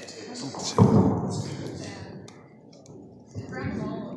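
Indistinct talking in a large hall, with a sudden loud thump about a second in that fades out over the next second, like a handheld phone being knocked or handled.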